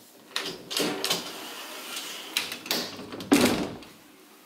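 Bifold closet doors being pulled shut: several knocks and rattles as the panels fold, then the loudest thud as they close near the end.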